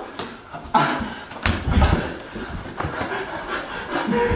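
Players panting and scuffling through a mini-hoop basketball scramble, with scattered knocks and a few low thuds about one and a half to two seconds in.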